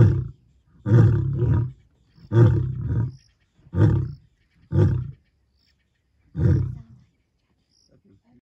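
Male lion roaring, the bout tailing off into a series of about six deep grunts that grow shorter and further apart, the last one near the end.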